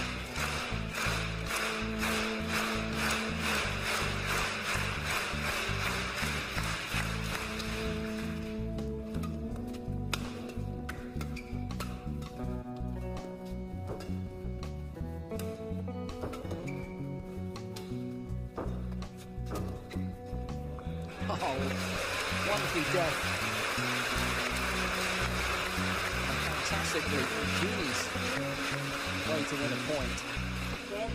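Music with a steady beat runs throughout. Over it, a large indoor crowd applauds and cheers: loud for the first several seconds, it dies away, then swells again with shouts about two-thirds of the way through.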